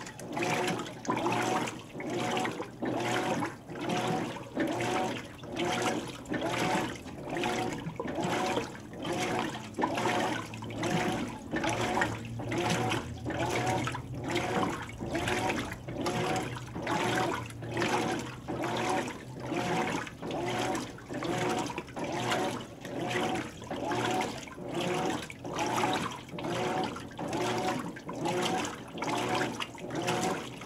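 Hotpoint HTW240ASKWS top-load washer agitating a tub full of water and clothes: rhythmic sloshing strokes, about one and a half a second, as the agitator swings back and forth, over a faint steady low motor hum.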